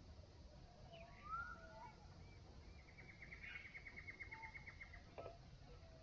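Faint birdsong over quiet outdoor background: a short gliding whistle about a second in, then a rapid, even trill of about nine notes a second lasting some two seconds.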